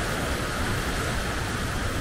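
Steady rushing noise of wind buffeting the microphone, mixed with small waves washing onto a sandy beach.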